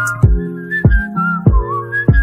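Brazilian funk instrumental break with no vocals: a high, wavering whistle-like melody over sustained synth chords and deep bass kicks that drop in pitch.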